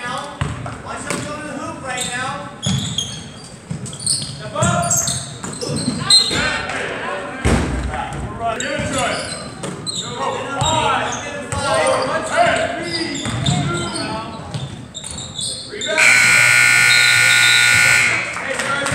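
Crowd voices in a large gym, with a basketball bouncing on the hardwood floor. Near the end, a gym scoreboard buzzer sounds loudly and steadily for about two seconds, marking the end of the first quarter.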